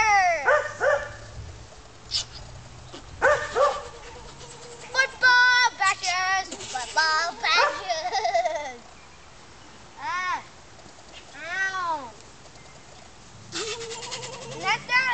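A boy's high-pitched, wordless vocal noises: squeals and sliding calls in short bursts, with two separate rising-and-falling calls about two-thirds of the way through.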